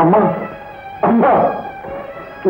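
Two short wailing cries whose pitch bends, one at the start and another about a second later.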